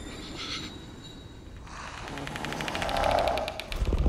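Suspense-film trailer sound design: a hushed stretch, then a rapid, evenly repeating clicking rattle that swells up about two seconds in and breaks off just before the end.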